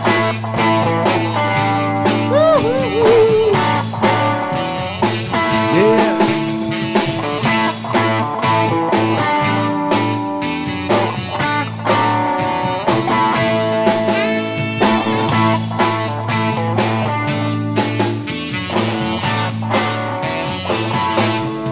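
Live blues-rock band playing an instrumental stretch: electric guitar with bending, wavering notes over held chords and a steady drum beat.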